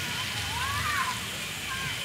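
Outdoor background noise: a steady low rumble with a faint distant voice rising and falling about halfway through.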